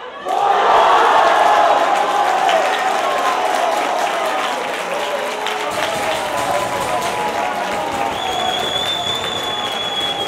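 Football spectators cheering, shouting and applauding a goal. The noise breaks out suddenly and stays loud throughout. A long high whistle sounds near the end.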